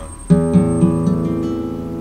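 Classical guitar playing an A minor chord: a strum about a third of a second in, then a couple more picked strokes while the chord rings.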